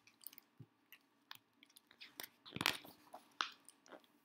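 Paper pages of a picture book being turned and handled: a string of short crinkles and clicks, loudest about two and a half seconds in.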